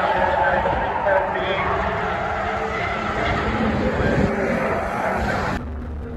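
Trackside sound of stock cars racing round an oval, engines running, mixed with the indistinct chatter of spectators close to the microphone. It cuts off abruptly near the end.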